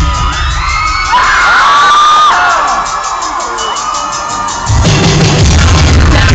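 Loud live electronic punk band recorded on a camera phone, the sound distorted: the bass and beat drop out for a breakdown of gliding, sweeping sounds, then the full beat comes back in near the end.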